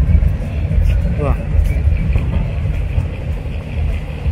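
Busy outdoor street ambience at night: a continuous low rumble with music and voices mixed in, and a brief gliding pitched sound about a second in.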